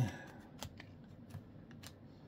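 Faint handling of Topps Chrome baseball cards as they are flipped through and laid on a pile: a soft slide of card stock with a handful of small sharp ticks.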